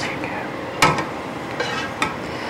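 Cookware being handled as a thick spinach-and-cheese mixture is scraped out of a pot into a glass casserole dish, with one sharp clink a little under a second in.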